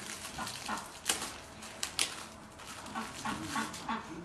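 A few sharp clicks about one and two seconds in, then short, low, wavering animal-like vocal sounds in the last second.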